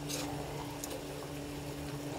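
Sauce simmering in a wok while a ladle stirs through it, with a couple of light clicks in the first second. A steady hum runs underneath.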